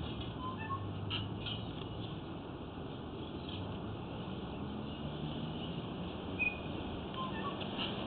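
Faint steady background hiss with a low hum, broken by a few brief, faint high chirps.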